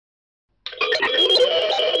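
Cartoon monster sound effect: a loud, wavering creature cry that starts suddenly about two-thirds of a second in, after silence.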